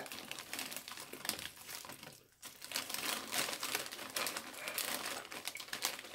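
A Flamin' Hot Cheetos chip bag crinkling as a hand rummages inside it for chips, a run of quick crackles with a short pause a little past two seconds in.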